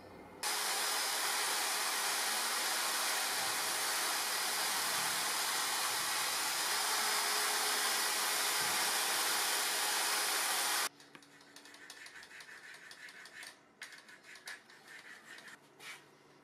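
Angle grinder fitted with a sanding disc running steadily while a hard maple knife-handle piece is sanded against it, a loud even rushing noise with a faint high whine. It cuts off suddenly about eleven seconds in, leaving quiet small clicks and rustles of handling.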